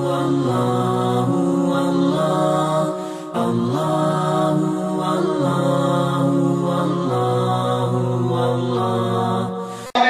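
Intro vocal chant of a religious phrase, sung in long held notes by layered voices with no instruments. It dips briefly about three seconds in and stops just before the end.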